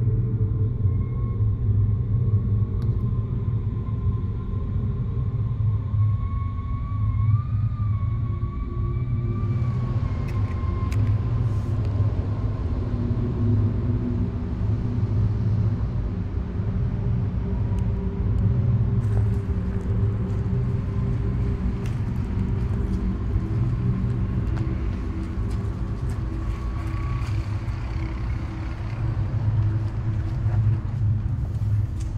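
Steady low rumble, with a faint high tone that wavers during the first ten seconds.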